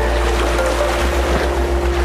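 Cinematic logo-intro sound design: a deep sustained bass with held mid-pitched tones under a rushing, wave-like noise swell. The bass begins to pulse about a second in.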